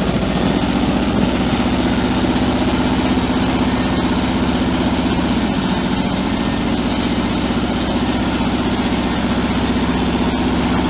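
1973 Chevrolet C65's 427 cubic-inch V8 gas engine idling steadily.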